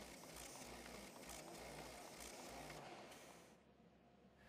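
Morgana DigiFold Pro creaser-folder faintly running as it feeds sheets: a steady whir with light ticks. It fades away about three and a half seconds in.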